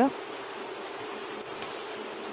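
A steady background hiss with a faint low hum, even throughout, and one tiny tick about a second and a half in.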